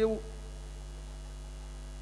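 Steady electrical mains hum from a live stage sound system, heard once a man's voice breaks off just after the start.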